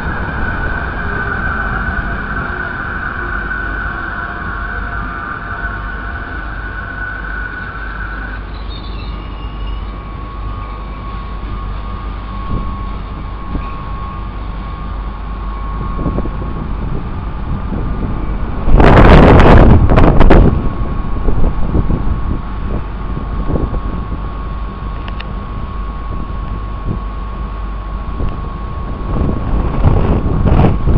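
Regional passenger train at a station platform: a steady low rumble with a high electric whine, one whine tone dropping out about eight seconds in. About two-thirds of the way through comes a loud, brief rushing burst.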